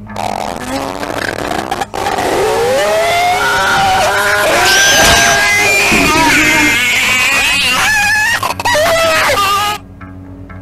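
Loud screeching and shrieking from a claymation horror short's soundtrack. Many cries slide up and down in pitch over one another. They break off for a moment about two seconds in and cut off just before the end.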